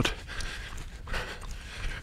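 A man breathing hard while jogging, with the thud of his footsteps.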